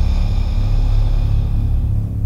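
Ambient meditation drone music: a deep, steady rumbling drone underneath a high shimmering layer of tones that fades out near the end.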